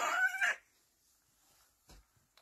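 A young baby's vocalization: one short, high, pitched coo of about half a second at the start, with a faint click near the end.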